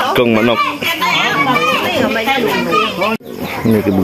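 Several voices talking over one another, some of them high-pitched, with no other sound standing out. The audio breaks off abruptly a little after three seconds in, and speech carries on after the break.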